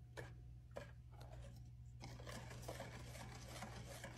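Faint wire whisk stirring in a stainless steel mixing bowl: soft scraping and rubbing, a little louder from about halfway through, over a low steady hum.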